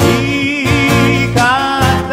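Live acoustic band playing: a voice singing a wavering, held melody over acoustic guitars, electric bass and drums.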